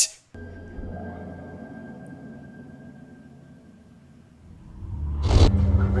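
TV episode soundtrack: a faint held music tone fades away. About four and a half seconds in, a low spaceship rumble swells up with a sharp rush just past five seconds, under the score of the next scene.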